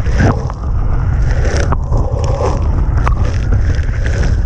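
Wind buffeting the microphone and sea spray hitting the camera aboard an RNLI D-class inflatable lifeboat running fast through rough water. Sharp slaps come about a second and a half in and again about three seconds in.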